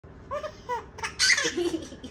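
A toddler laughing in short high-pitched bursts, loudest and breathiest about a second in.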